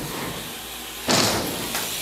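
BMX bike on wooden skatepark ramps: tyres rolling, then a sudden loud thud about a second in as the bike hits a ramp before taking off, followed by a fading rush of noise.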